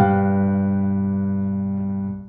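Piano: a chord struck once and held, ringing on and slowly fading.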